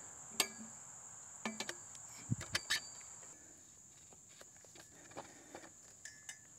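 Crickets chirping as a steady high thin drone, with a few sharp light clicks and knocks as the portable garage's frame pipes and fittings are handled and fitted together.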